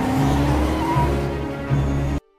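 A car doing a burnout: the engine revving with a slowly rising pitch, tyres spinning and squealing, over a deep pulsing rumble.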